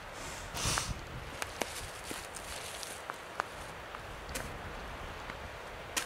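Footsteps and rustling in dry, low dune brush, with a brief louder rustle about half a second in and scattered small crackles, over a steady low rumble.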